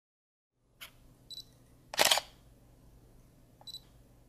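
Camera sound effects for a logo sting: a faint click, a short high focus beep, then a shutter release about two seconds in, and another beep near the end. A low hum sits under it all.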